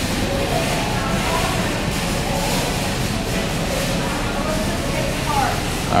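Steady background noise of a busy supermarket, with faint distant voices now and then.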